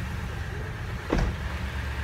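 A lifted Toyota Tundra pickup idling steadily, a low even hum. A single short thump comes about a second in.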